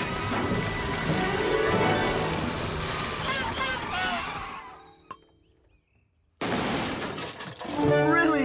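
Cartoon soundtrack: music with a shattering, breaking crash, fading out to a brief near silence about halfway through. Near the end comes a sudden burst of hissing from a steam traction engine.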